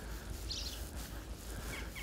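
Quiet outdoor street ambience with a low rumble, and a brief high chirp about half a second in.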